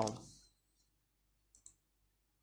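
A mouse button clicking: two quick ticks close together about a second and a half in, after a word trails off at the start.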